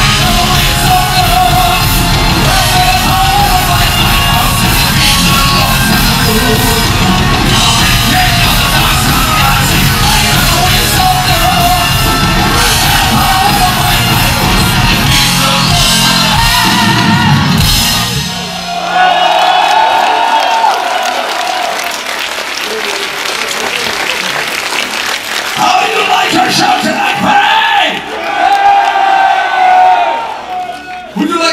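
A power metal band playing loud live, with distorted electric guitar, bass, drums and a male singer, until the band cuts off about 18 seconds in. After that, a man's voice sings and shouts long held notes through the PA without the band, over crowd noise.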